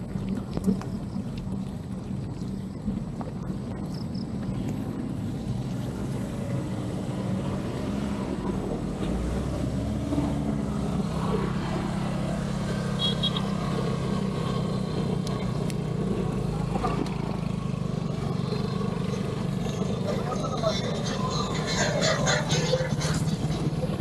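A motorcycle engine running as it overtakes the bicycle, growing louder about ten seconds in and holding for several seconds over a steady road-noise haze. Voices come in faintly near the end.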